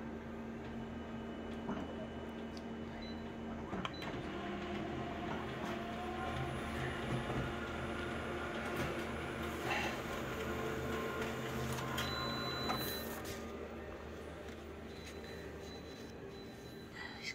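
Office multifunction colour copier scanning an original and printing a full-colour copy: motors and rollers running steadily with several clicks. The run gets louder a few seconds in and dies down about 13 seconds in as the job finishes.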